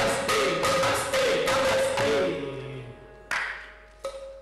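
Carnatic percussion ensemble led by ghatam (clay pot drums) playing fast, dense strokes over a steady held tone. About two seconds in the phrase ends and the sound dies away, with one more ringing stroke near the end.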